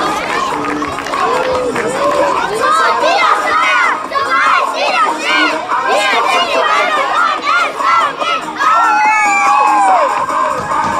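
A group of young children shouting and cheering together in a team huddle, many high voices overlapping and rising and falling, with one long shout sliding down in pitch near the end.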